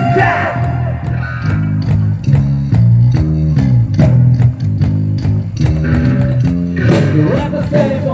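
A rock band playing live and loud: electric guitars and bass guitar over a drum kit with regular drum hits.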